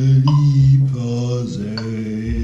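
A man's voice singing a chorale melody slowly, in long-held low notes that change pitch a few times.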